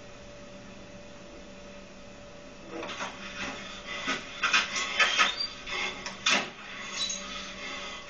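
A steady low hum, then from about three seconds in a run of irregular knocks and clatters, like things being handled or bumped.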